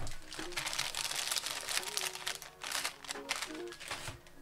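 Rapid rustling and rubbing of a hand being wiped clean of makeup, over background music.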